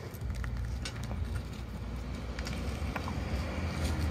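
Green skin being peeled by hand off a luffa gourd: faint scattered crackles and small tearing clicks over a steady low outdoor rumble.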